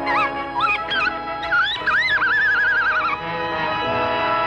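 Cartoon orchestral score with sustained notes. Over it runs a high, bird-like voice in short rising and falling swoops that ends in a long wavering note, a mournful cartoon bird cry that fades out about three seconds in.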